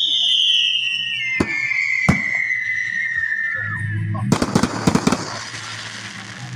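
Fireworks: a long whistle falling in pitch over about three seconds, two sharp bangs, then a burst of dense crackling near the end.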